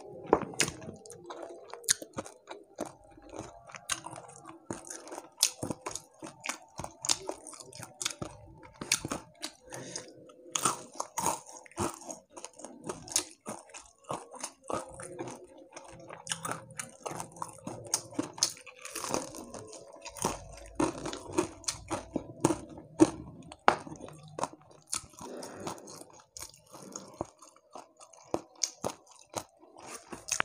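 Crispy deep-fried catfish being bitten and chewed close to a clip-on microphone: irregular sharp crunches and crackles throughout.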